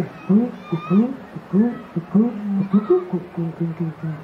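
Live band playing a song with an Afrobeat feel: a short rising, sliding note repeats two or three times a second in a groove over a held low note.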